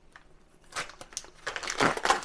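Plastic food packaging crinkling as it is handled: a run of short crackles starting about a third of the way in and getting louder near the end.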